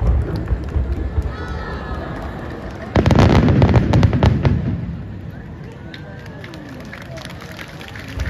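Aerial firework shells bursting: a boom right at the start, then a louder burst about three seconds in, followed by a dense crackling that dies away over a second or two.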